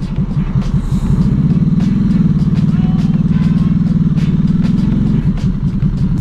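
Ducati Hypermotard 796's 803 cc air-cooled L-twin engine pulling away under load, heard from the rider's seat. The engine note climbs over the first couple of seconds, holds steady, then drops off about five seconds in.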